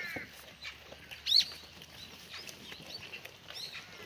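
Birds chirping in quick, short, high calls again and again, the loudest a sharp rising chirp a little over a second in, with a short, slightly falling call right at the start.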